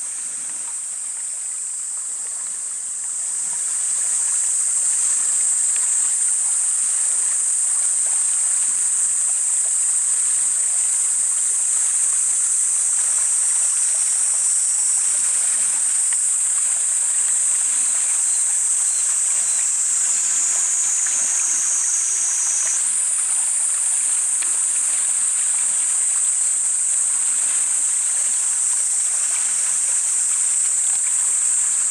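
A chorus of cicadas singing in a steady, high-pitched drone that grows louder about three seconds in and holds.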